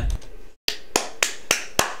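A person snapping his fingers about five times in quick succession, each a sharp dry click.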